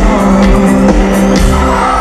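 Live pop-rock band playing at full volume: electric guitar, drum kit with cymbals and a steady bass, with a male lead vocal singing over it.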